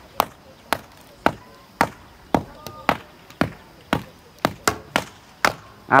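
Tall wooden rammers pounding raw, unmixed earth inside timber formwork as a rammed-earth wall is built up: a run of sharp thuds, about two a second, from men tamping in turn.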